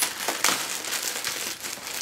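A clear plastic garment bag crinkling and rustling as it is handled and opened, with a quick run of sharp crackles.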